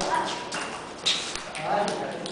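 Table tennis ball struck and bouncing on the table: a few sharp clicks, the loudest about a second in, as the rally ends. A voice follows near the end.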